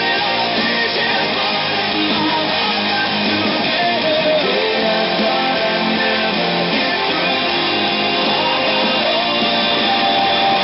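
Electric guitar strummed through an amp, an Epiphone Les Paul Standard into a Roland Cube 30X, playing along with a loud full-band rock recording.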